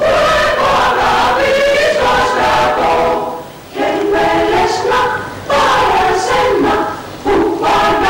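Mixed choir of men's and women's voices singing in harmony, in phrases broken by brief pauses.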